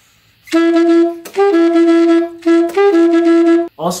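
Alto saxophone playing a short swung phrase: a repeated lower note, written C-sharp, broken twice by a quick step up to E. It stops just before the end.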